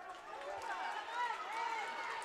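Basketball shoes squeaking on a hardwood gym floor, many short chirps in quick succession, over a murmur of crowd chatter.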